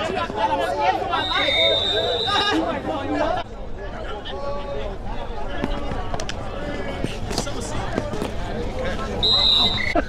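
Several people's voices overlapping in casual chatter and calls. A thin, steady high tone sounds for over a second about a second in and again briefly near the end.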